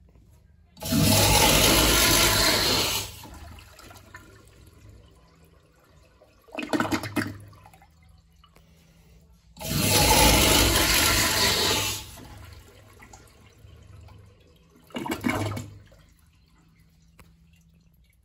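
1960s American Standard Afwall toilet flushed twice through its flushometer valve: each time a loud, aggressive rush of water lasting about two and a half seconds, then a quieter tail as the flow dies away. A short, loud burst of sound follows about four seconds after each flush.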